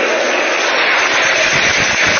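Large theatre audience applauding loudly and steadily, mixed with laughter.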